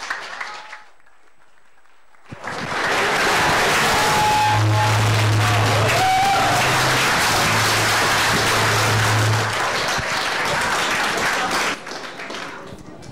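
Audience applauding loudly in a hall. The applause starts about two seconds in and dies down just before the end, with a steady low hum in the middle.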